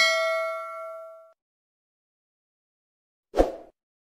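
Sound-effect ding: a single metallic, bell-like strike that rings and fades away over about a second and a half. A short low thump follows near the end.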